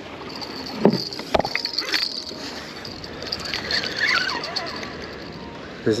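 Spinning fishing reel being cranked, a faint steady high whir, over wind buffeting the microphone, with two sharp knocks about a second in.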